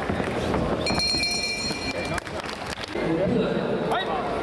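Indistinct voices in a large hall with scattered thuds of boxing gloves and shuffling footwork from a sparring bout in the ring; a high steady tone sounds for about a second near the middle.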